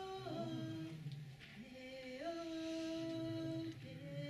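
A woman singing a traditional song unaccompanied, in long held notes that slide from one pitch to the next. About a second and a half in she pauses briefly, then glides up into a long note held for about a second and a half.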